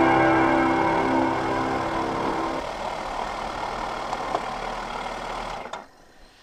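Background music fading out over the steady running of a motorcycle's engine, which fades down with it and drops away near the end.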